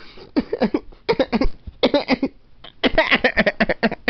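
A man laughing in four quick runs of short, breathy bursts.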